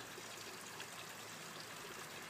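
Faint, steady rushing background noise with no distinct events.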